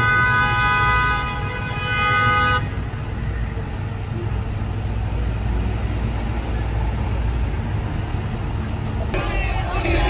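A vehicle horn held for about two and a half seconds, then a steady low rumble of truck engines and street traffic. Near the end the sound changes suddenly and voices come in over the rumble.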